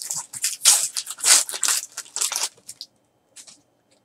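Foil wrapper of a 2014 Topps Chrome trading card pack being torn open and crinkled by hand: a run of crackling rips that trails off about two and a half seconds in.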